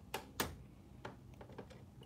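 A few small plastic clicks, two sharper ones in the first half second and fainter ones after, as a blade holder is seated and locked into the tool clamp of a Silhouette Cameo cutter.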